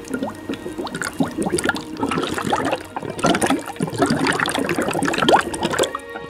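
Frothing liquid in a glass gurgling and bubbling, a dense run of short rising plops that cuts off suddenly near the end.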